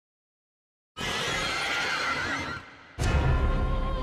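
Soundtrack of an animated horror clip. After a second of silence comes a noisy sound effect with a wavering high pitch, lasting about a second and a half. About three seconds in, a low rumble and sustained music tones begin.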